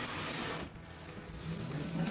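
Cardboard box rustling and scraping as a bent steel exhaust pipe is lifted out of it, loudest in the first half second or so.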